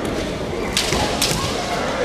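Two sharp cracks of bamboo shinai striking, about half a second apart, over the background noise of a large hall.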